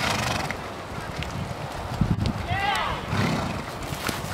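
Hoofbeats of several horses moving together on sand footing, a run of soft, irregular thuds. About two and a half seconds in, a horse gives a short whinny that falls in pitch.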